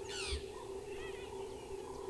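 Wild birds calling: a quick descending call at the start and a few short chirps about a second in, over a steady low hum.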